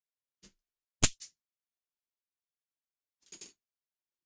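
A sharp click about a second in, a smaller one just after, and a short soft rustle near the end: small metal model parts in plastic bags being set down on a cutting mat.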